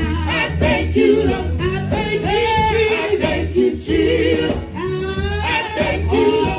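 Gospel group singing through microphones, several voices together in a continuous line with bending, sustained notes, over a steady low accompaniment.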